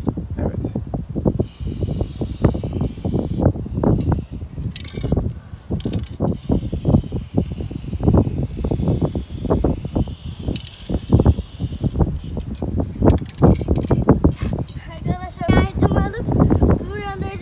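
Aerosol spray-paint can hissing in two long bursts, from about one to three seconds in and from about six to twelve seconds in, as paint is sprayed onto a particle-board panel. Wind buffets the microphone with a low rumble throughout.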